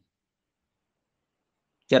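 Near silence: a pause in a man's speech, with his voice starting again just at the end.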